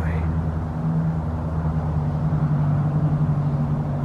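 A car engine idling, a steady low hum.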